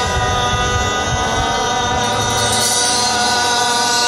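Live rock band playing, with male voices holding one long note over electric guitar, bass and drums.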